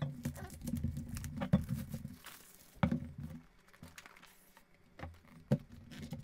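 Cardboard product box being opened by hand: a run of taps, scrapes and rustles as the lid is worked off, with a few sharper knocks, the loudest near the end.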